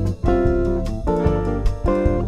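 Instrumental bossa nova passage: a hollow-body archtop jazz guitar playing chords over bass, with keyboard, the chords changing about every half second.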